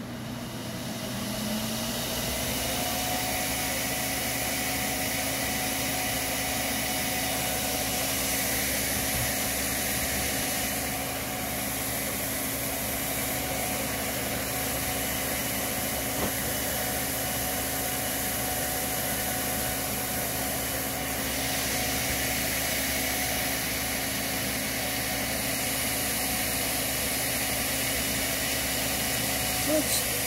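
12 V DC fan of a bucket swamp cooler spinning up as it is switched on, its hum rising in pitch over about two seconds, then running steadily with a whir of moving air.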